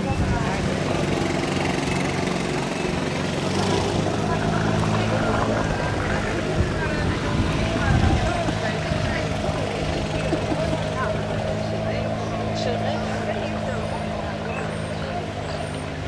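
A motor running steadily throughout, with indistinct voices over it.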